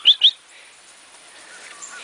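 A bird chirping: four quick, high chirps in about half a second at the start, then only faint outdoor background.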